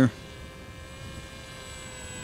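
Brushless electric motor (2400 kV) and 6x5.5 propeller of a foam-board RC jet in flight, giving a steady, high, many-toned whine at cruise throttle.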